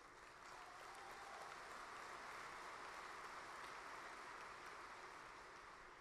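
A large audience applauding, faint, swelling and then fading away.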